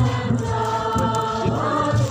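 A crowd of people singing a hymn together, with long held notes.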